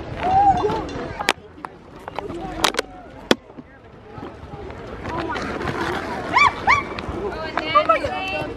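Children's voices calling out and squealing, with high rising-and-falling squeals in the second half. There are three sharp knocks in the first half.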